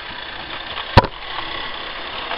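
Model railway train, a Class 47 locomotive pulling Mk1 coaches, running along the track with a steady low hum. A single sharp click about a second in is the loudest sound.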